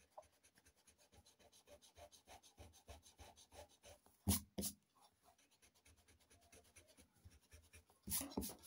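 Faint pencil eraser rubbing on notebook paper in short scratchy strokes as a pencil line is erased, with two quick knocks about four seconds in.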